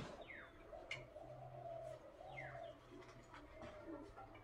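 Faint bird calls: two short chirps that fall in pitch, with a few light clicks between them.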